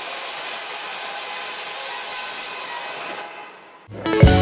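Synthetic intro sound effect: a steady hiss like white noise with faint tones in it, fading out in the last second.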